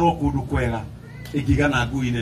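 A man speaking into a microphone through PA speakers, in two drawn-out voiced phrases with a short pause between them.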